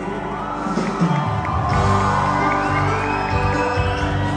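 A rock band playing live through a PA, with acoustic guitar, electric guitar, bass, keyboard and drums, and a crowd cheering and shouting over the music.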